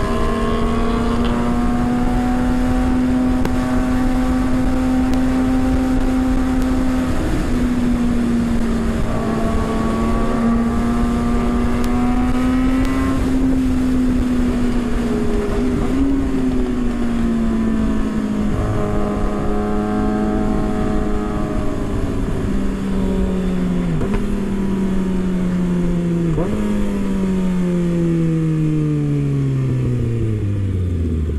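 Kawasaki Ninja ZX-6R inline-four sport bike engine under way at speed, with wind noise on the helmet microphone. The engine note holds fairly steady, shifts pitch abruptly a few times as gears change, and falls steadily near the end as the bike slows.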